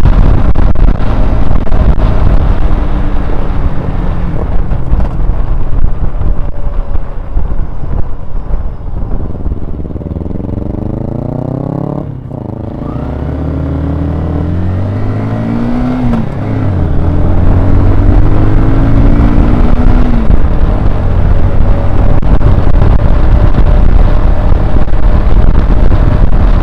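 Honda CBR125R's small single-cylinder four-stroke engine heard on a ride: it is loud with rushing wind at first, then the engine note falls as the bike slows to its quietest point about twelve seconds in. The engine then pulls away with a rising note, a gear change around sixteen seconds, and another rise, after which steady wind noise at cruising speed again covers most of the sound.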